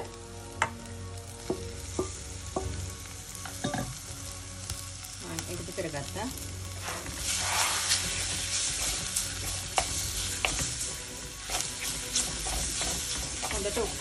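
Squid pieces frying with onions and green chillies in hot oil, stirred with a wooden spoon that knocks now and then against the pan. The sizzle swells louder about halfway through as the squid is mixed in.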